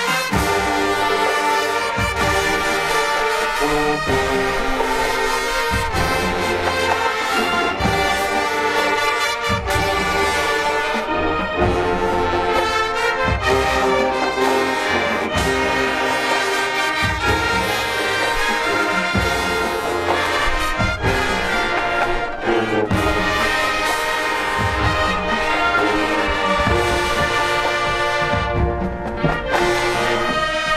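High school marching band playing, a full brass section of horns and sousaphones carrying the tune over a regular drum beat.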